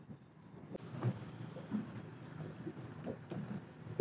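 Quiet ambience on a small boat on open water: light wind on the microphone and water lapping at the hull, with a few soft irregular knocks, the clearest about a second in.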